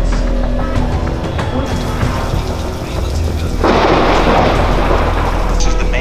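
Background music with a steady low drone. Just past halfway, a loud rushing noise lasts about two seconds.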